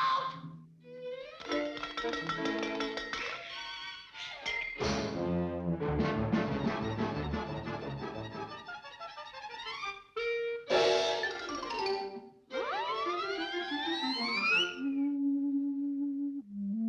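Fast, busy orchestral cartoon score with many short notes. Near the end, several rising glides sweep upward and give way to a single held note.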